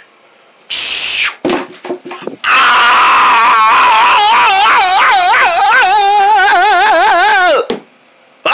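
A voice holding one long wavering 'whoa' for about five seconds, its pitch wobbling up and down and sinking slowly, imitating riders on a roller coaster. It is preceded by a short hiss about a second in and a few soft noises.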